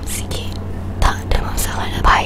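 Soft whispering close to the microphone, in short breathy bursts, over a low steady hum.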